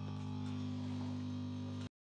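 Steady low hum of the air blower that dries the glue on scalp electrodes, running evenly, then cutting off abruptly near the end.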